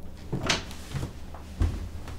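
A sharp knock about half a second in, then soft low thumps of footsteps on a floor as someone turns and walks out through a doorway.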